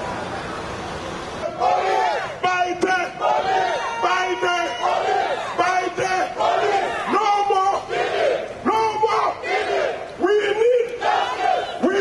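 Marching protest crowd, then from about a second and a half in a man shouting loud protest cries into a hand microphone in short repeated phrases over the crowd.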